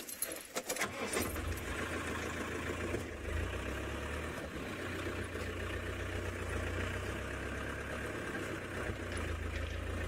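Open safari vehicle's engine running as it drives along a rough dirt track, with a steady low rumble that comes in about a second in. A few clicks and rattles from the vehicle are heard near the start.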